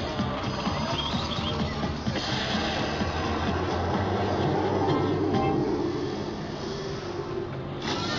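Electronic music from a video slot machine's bonus-round animation, playing continuously through the machine's speakers, with an abrupt change just before the end as the win celebration starts.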